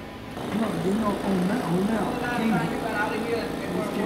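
A man's voice talking, quieter and further from the microphone than the main speaker, over a steady faint background hum.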